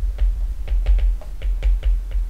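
Stylus writing on a tablet screen: an irregular run of sharp ticks and taps, about five a second, over low thuds.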